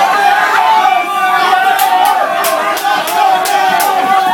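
A crowd of bar patrons singing along loudly together in ragged unison. About two seconds in, sharp claps join them, about three a second.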